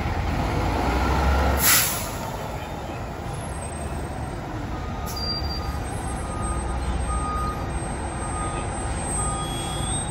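Fire department rescue squad truck backing up: its engine running heavily, a short burst of air-brake hiss about two seconds in, then the back-up alarm beeping about once a second.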